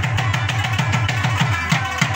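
Pashto folk ensemble playing: tabla with a fast run of bass-drum strokes, about eight a second, each dipping in pitch. Under it run held harmonium tones and a plucked lute.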